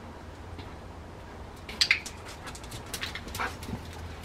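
A Rottweiler gives a single short, sharp vocal sound about two seconds in, followed by a few lighter ticks and taps.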